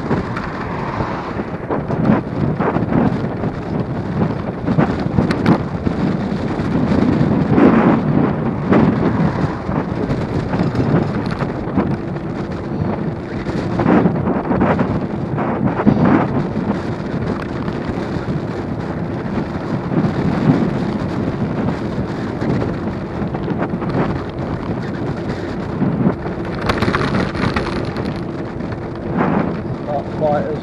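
Wind buffeting the microphone of a moving electric scooter, over a steady rumble of the wheels on the tarmac, with occasional knocks as they hit uneven patches. A faint steady hum joins about twelve seconds in.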